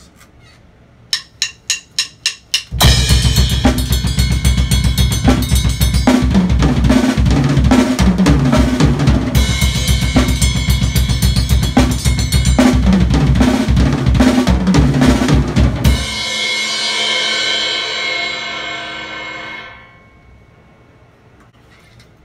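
Drum kit played up to tempo: a count-in of about six stick clicks, then about thirteen seconds of fast 32nd-note patterns split between the hands and kick drum, running over snare and toms with cymbals and a bell. It stops suddenly and the cymbals ring out, fading over a few seconds.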